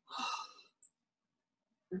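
A man's single breathy exhale, a sigh lasting about half a second.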